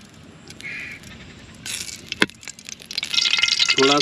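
Ghee sizzling as it melts in a hot aluminium karahi, faint at first and then a loud, dense crackle from about three seconds in. A single sharp clink of the metal spoon against the pan a little after two seconds.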